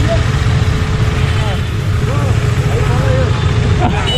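Many KTM motorcycle engines running at idle and low speed in a tight group, a steady low rumble, with people's voices faintly over it.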